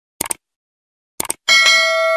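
Short clusters of quick clicks, then a struck bell-like chime about one and a half seconds in that rings on with several steady tones.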